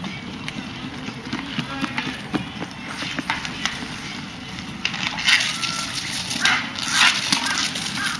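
Street roller hockey on asphalt: sharp clacks of sticks hitting the ball and pavement, and the scraping hiss of skate wheels, which gets louder in bursts in the second half. Voices are faint in the background.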